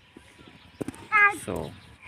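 Speech only: after a quiet first second, a child's short high-pitched word, then a man saying "so".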